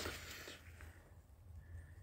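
Near silence: a faint low background hum.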